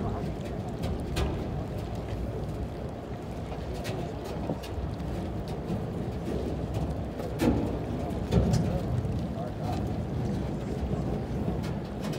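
Steady low rumble of a boat under way, mixed with wind on the microphone. Passengers' voices sound faintly behind it, briefly louder about two-thirds of the way through.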